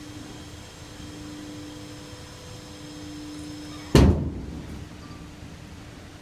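LINKA straw bale feeder running with a steady machine hum. About four seconds in the hum stops and there is a single loud, heavy bang, followed by a low rumble that dies away over about a second.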